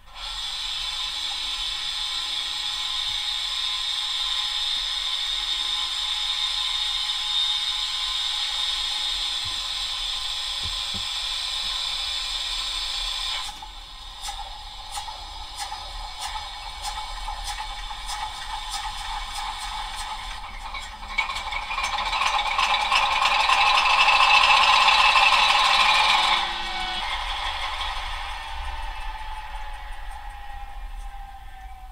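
Diesel engine sound from the sound decoder of a PIKO H0-scale PKP SU46 model locomotive, played through the model's small loudspeaker, thin and without bass. It starts abruptly as a steady drone, turns rougher with rattling clicks about halfway through, swells louder for a few seconds near the end, then drops back.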